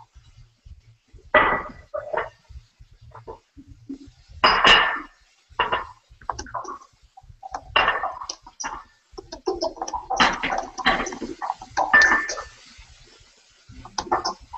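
Kitchen dish clatter: a spatula knocking and scraping in a glass mixing bowl and a plate set down on a stone counter. It comes as a string of short knocks and clinks, some briefly ringing.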